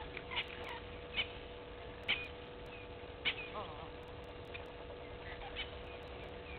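Birds calling outdoors: a handful of short, sharp calls about a second apart, then a quick run of falling chirps in the middle, over a steady faint tone.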